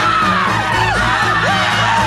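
Several people screaming and yelling together over a music track with a steady low bass.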